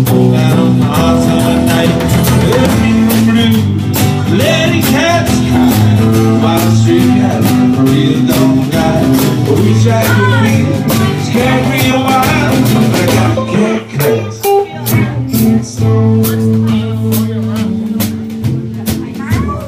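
Live band playing an instrumental break: electric guitar picking a lead line over strummed acoustic guitar and a drum kit with frequent cymbal strikes. The playing thins out into choppier, more broken-up hits near the end.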